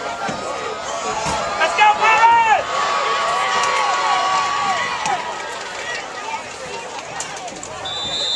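Spectators and sideline players shouting and cheering over one another while a play is run, loudest about two seconds in, with one long drawn-out yell in the middle.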